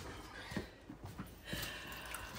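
Footsteps on a wet dirt path: a few soft, irregular steps over faint outdoor background noise.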